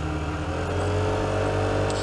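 Vespa GTS 125 scooter's single-cylinder four-stroke engine running while riding, its pitch rising a little about half a second in and then holding steady.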